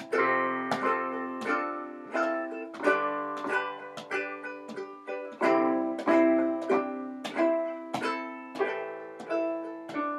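Handmade cherry-wood resonator ukulele with a Republic cone, strummed in a steady rhythm of ringing chords, about two strokes a second, with a keyboard playing along.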